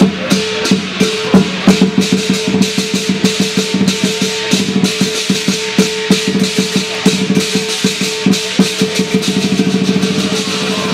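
Chinese lion dance percussion: a big drum beaten in a fast, uneven rhythm with cymbals clashing and a gong ringing steadily beneath. The strokes crowd into a rapid roll near the end.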